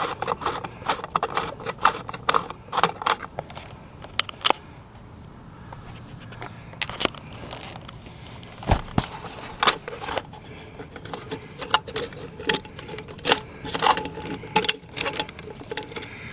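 Irregular metallic clicks, clinks and rattles of hands working the mounting hardware of an outdoor security light fixture on its electrical box. There is a quieter stretch around the middle and a single sharp knock a little past halfway.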